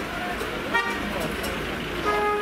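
Street traffic noise with a short vehicle horn toot about a second in.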